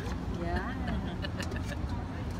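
Indistinct background voices at moderate level, with a few faint light clicks and knocks.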